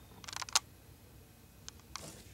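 A quick run of small clicks and taps about half a second in, then two single clicks near the end, from the camera being handled to zoom in.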